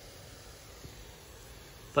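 Faint steady hiss of a hand-pumped garden sprayer misting diluted degreaser onto an air-conditioner condenser coil.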